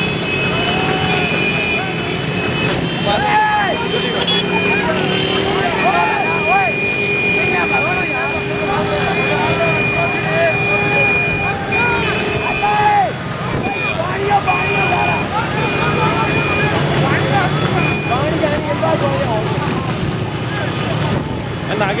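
Motorcycle and vehicle engines running alongside a horse-cart race, with men shouting throughout. A high steady horn-like tone is held for several seconds, then sounds in short beeps.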